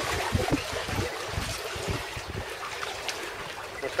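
Wind buffeting the microphone in irregular low rumbling gusts over a steady rushing hiss of wind and choppy sea.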